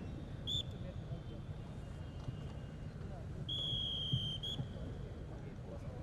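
A high, steady whistle: a short blast, then a held blast of about a second, then another short blast. It sounds over a low, steady background of open-air ground noise.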